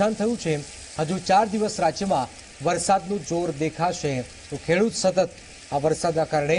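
A newsreader's voice speaking over a steady hiss of falling rain.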